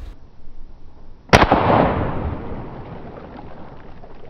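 A single shot from a scoped gun about a second in, followed by a spray of water fading over a second or two as the bullfrog at the crosshairs is hit.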